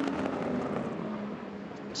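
Sports prototype race cars running down a straight at racing speed, their engines giving a steady, sustained note.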